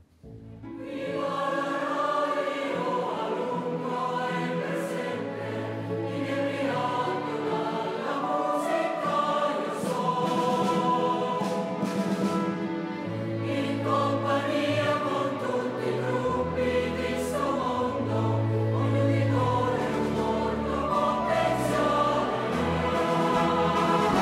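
A symphony orchestra and a mixed choir play and sing together, with strings and trumpets among the instruments. The music comes in after a brief hush at the very start and carries on in full, sustained chords.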